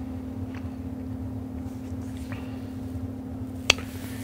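Steady low background hum with a couple of faint ticks and one sharp click near the end.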